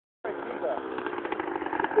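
Small motorbike engine running steadily.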